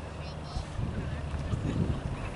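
Wind rumbling on the microphone outdoors, with faint distant voices from players and spectators.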